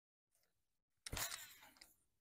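A fishing cast about a second in: a short rushing swish with line running off the reel, fading out in under a second.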